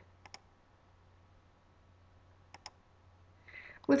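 Faint computer mouse clicks: a quick pair of ticks near the start and another pair about two and a half seconds in, over a low steady hum, ahead of a soft breath near the end.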